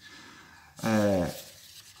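Sheets of paper shooting targets being shuffled and lifted, a soft papery rustle, with a short sound from a man's voice about a second in.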